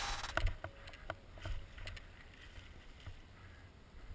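A downhill mountain bike rolling over a dirt trail, heard faintly from a helmet camera: scattered clicks and rattles from the bike over a low rumble of wind on the microphone.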